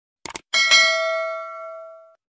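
Subscribe-button animation sound effect: a quick double mouse click, then a bell ding that rings and fades out over about a second and a half.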